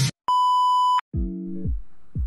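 A steady test-card beep, a single pure tone lasting just under a second, of the kind played with TV colour bars. It starts and stops abruptly. Music with keyboard chords starts right after it.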